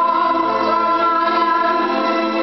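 A string ensemble of violins and cellos playing long held chords, with a woman's voice holding a sustained, wordless note over them.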